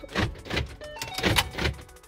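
2014 Ford Mustang's power door lock actuators cycling in a quick series of clunks, the car's confirmation that the new remote fob has been programmed.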